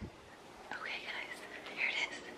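A woman whispering quietly, starting a little under a second in.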